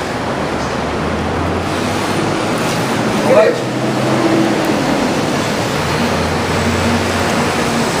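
Steady rumble of road traffic, with a short vocal sound about three and a half seconds in.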